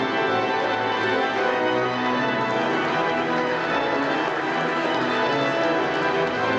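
Organ playing recessional music in full, sustained chords as the assembly files out of a church.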